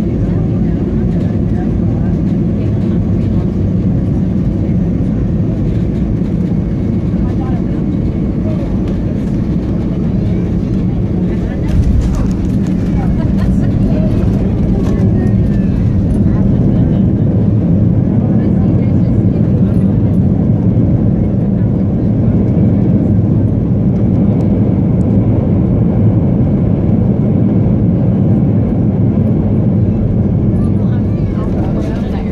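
Airliner cabin noise through landing: a steady low rumble of engines and rushing air, a thump about twelve seconds in as the wheels touch down, then a slightly louder rumble as the plane rolls along the runway.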